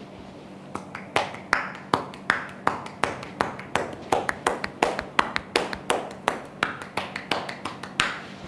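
Massage therapist's hands patting and striking a bare back in quick percussive massage strokes, the closing tapotement. About three sharp slaps a second with lighter ones in between, starting just under a second in.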